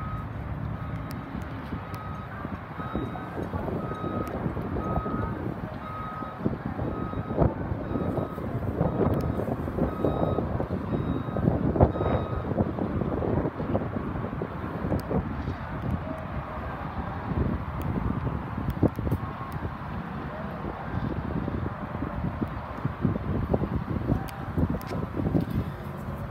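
A repeating electronic beep, a bit more than one a second, that stops about halfway through, over uneven wind rumble and handling noise on the microphone.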